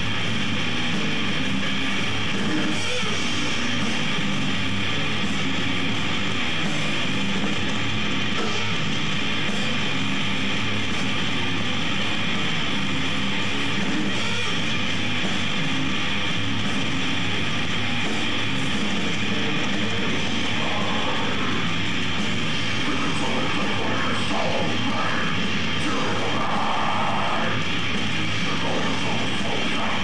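Death metal band playing live: distorted electric guitars, bass and drums in a dense, unbroken wall of sound.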